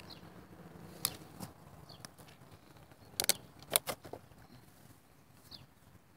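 A handful of sharp clicks and crackles close to the microphone, one about a second in and a tight cluster a little past three seconds in. Behind them a small bird gives a short, high, falling chirp now and then.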